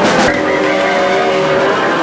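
Loud live garage-rock band: the drums stop after a last hit early on, and the distorted electric guitars hold sustained notes over a thin high whine.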